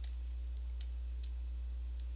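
A few faint clicks as a pointer clicks through a settings drop-down, over a steady low electrical hum.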